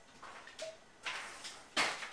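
Vodka pouring from a glass bottle into a tall mixing glass, a hissing trickle in uneven rushes that grows louder in the second half, with a sudden loud burst near the end.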